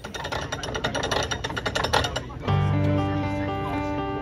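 Rapid metallic clicking of a canal lock's cast-iron paddle gear as it is wound with a windlass, the pawl clicking over the ratchet, for about two and a half seconds. Then background music with sustained notes comes in and carries on.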